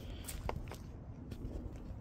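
Bryant 594DNX condensing unit running, a steady low hum from its Copeland scroll compressor, which is wrapped in a sound blanket, and its GE two-blade fan. A few light footsteps on gravel sound over it.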